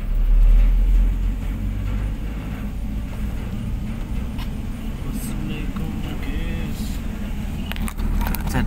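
Car driving, heard from inside the cabin: a steady low rumble of engine and road noise, loudest in the first second.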